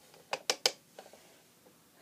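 Three quick, sharp clicks, then a few fainter ticks: small hard makeup items being picked up and handled.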